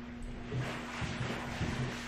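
Quiet room tone with a steady low hum and a few faint, soft rustles.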